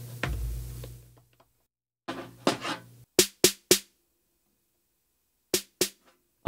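Electronic drum samples, most likely the snare, struck on a Roland SPD-SX sampling pad. A hit with a low thump decays over about the first second, then a short run of three sharp strikes comes around three seconds in and two more near the end.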